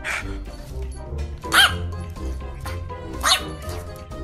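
Background music, with two short calls from a pet otter being petted, each rising and falling in pitch, about a second and a half apart.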